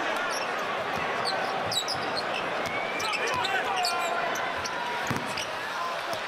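Arena crowd noise during live basketball play, with sneakers squeaking in short high chirps on the hardwood court and the ball bouncing.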